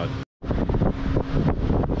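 Foam adhesive being peeled off the back of a chrome plastic bow tie emblem close to the microphone: a rough crackling, rustling noise that starts abruptly about a third of a second in.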